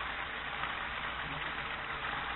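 Cornmeal-battered catfish chunks deep-frying in hot oil: a steady bubbling sizzle.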